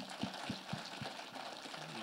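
Congregation applauding, a steady patter of many hands clapping, with a few low thumps in the first second.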